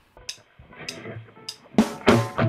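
Drum count-in of a play-along backing track: three sharp clicks evenly spaced about 0.6 s apart, then a loud drum hit near the end as the band starts.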